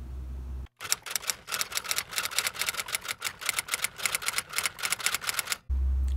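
A rapid, even run of sharp clicks or taps, about six a second, starting and stopping abruptly and lasting about five seconds.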